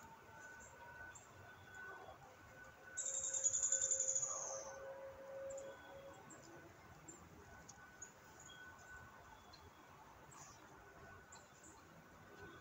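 A foil-covered baking pan is pulled from the oven and set on the stovetop. It gives a brief scraping rustle about three seconds in, the loudest sound. A few faint clicks follow as the oven door is shut.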